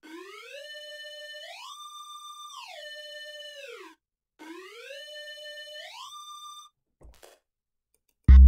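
Serum synth lead playing a basic-shapes triangle wave bent heavily in pitch: a single note climbs about two octaves in two steps, holding at each, then slides back down to where it began. After a short break the phrase starts again and stops abruptly at the top of its climb.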